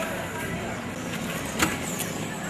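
Outdoor street ambience with murmuring voices from a crowd, and one sharp click about a second and a half in.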